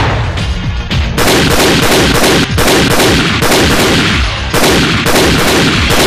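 Rapid, sustained gunfire, several shots a second in close succession, as in a film gunfight soundtrack.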